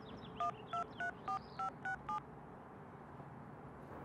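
Touch-tone telephone keypad dialing: seven quick two-tone button beeps, about three a second, starting about half a second in and stopping a little after two seconds.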